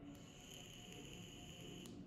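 A faint, steady, high-pitched electronic beep, one held tone lasting nearly two seconds that starts and cuts off abruptly, over low room hiss.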